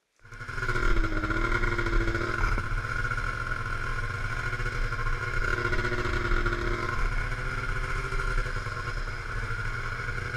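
Steady rushing wind and snow noise on a body-mounted action camera during a downhill snowboard run through trees, starting abruptly.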